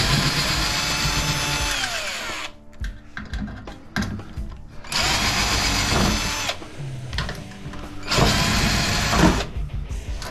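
Cordless drill driver backing screws out of a microwave oven's sheet-metal back panel. The motor whines three times, for about two and a half seconds, then a second and a half, then just over a second, and each run winds down in pitch as the trigger is let go.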